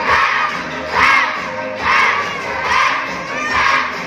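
A crowd of children shouting together in rhythm, a loud shout about once a second, over dance music.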